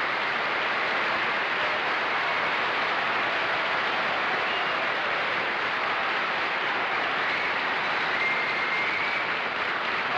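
Studio audience applauding steadily in a long, even ovation.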